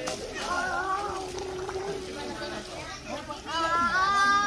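Children's voices calling out while playing in a swimming pool, with a louder, high-pitched child's call rising near the end.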